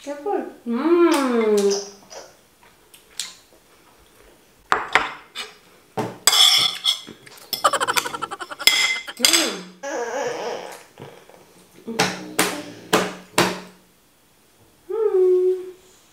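A plastic spoon scraping and knocking against a bowl while a toddler is spoon-fed: a run of irregular clicks and scrapes, busiest in the middle, with three sharp knocks near the end. A wordless voice is heard at the start and again shortly before the end.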